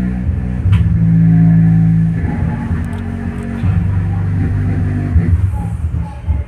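Song played through the 2.1 bass-treble board's low-pass subwoofer output into a small full-range speaker: only steady low bass notes come through, with the rest of the music filtered out. The bass lacks force because the speaker is small and not a subwoofer.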